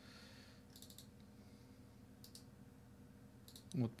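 Faint computer mouse clicks, a few scattered short clicks over a low steady hum, while folders are opened in a file manager.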